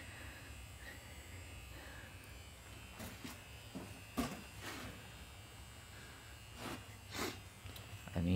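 A low, steady electrical hum, with several brief faint taps scattered through the second half.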